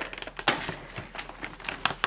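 Fingers pushing through the perforated cardboard door of an advent calendar: a run of irregular crackles and small tearing clicks, the sharpest about half a second in.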